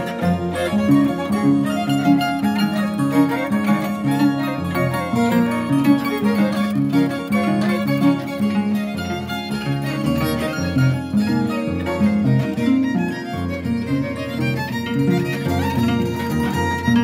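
Andean harp and violin playing a tune together live, with the harp's low notes moving steadily underneath.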